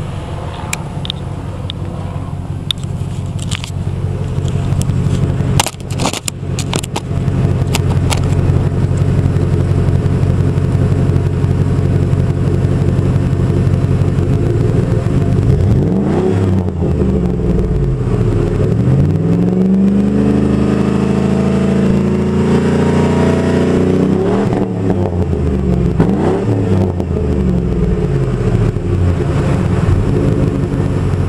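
A 1997 Ford F-150's 4.6-litre V8 idling through a 3-inch Flowmaster three-chamber exhaust: a steady low exhaust note, louder after about eight seconds. In the second half the engine is revved up and back down a few times, one rev held for a few seconds, before it settles back to idle.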